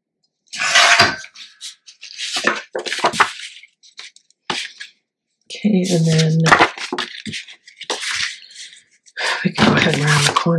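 Sheets of scrapbook paper and cardstock rustling and sliding as they are picked up, laid down and shifted on a cutting mat, in a series of short, crisp bursts. Brief wordless vocal sounds come about halfway through and again near the end.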